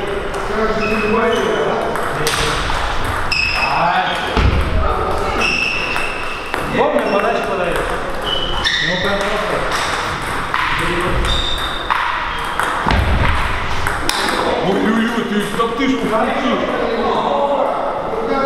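A table tennis ball striking bats and bouncing on the table, short high pings coming irregularly about once a second, over voices talking in a large hall.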